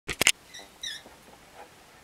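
A few sharp handling clicks right at the start, then two faint, brief high squeaks; the guitar is not yet being played.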